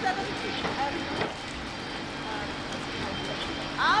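Steady low hum of an urban building site with faint distant voices. A man calls out loudly just before the end.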